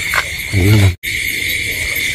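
Steady chorus of night insects, a constant high-pitched trill. It cuts out for an instant about a second in.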